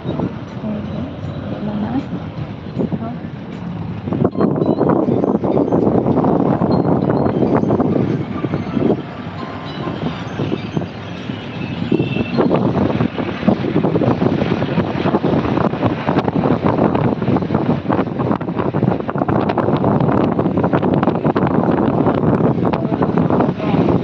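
Engine and road noise inside a moving passenger vehicle: a steady, loud, noisy drone that gets louder about four seconds in and eases off briefly around ten seconds.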